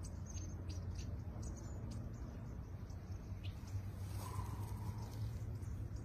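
Wild birds chirping in the trees: scattered short, high chirps, most of them in the first two seconds, over a steady low hum.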